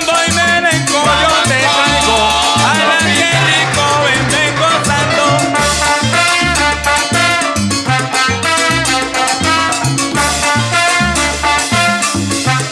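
Salsa guaguancó recording in an instrumental passage: a melody line with a rising slide about three seconds in, over a steady bass line and regular percussion.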